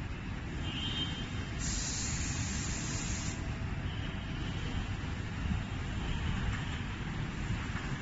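Outdoor city background noise: a steady low rumble throughout, with a brief hiss lasting under two seconds about a second and a half in.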